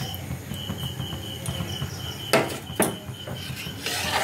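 A metal spatula stirring milk in an aluminium pan, knocking sharply against the pan twice a little past halfway. A faint, thin high trill sounds on and off in the background, mostly in the first half.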